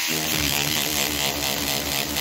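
Handheld battery-powered rotary cleaning brush running with a steady buzzing hum as its stiff tapered bristle head spins against a fabric convertible roof, with a hiss of bristles scrubbing the cloth.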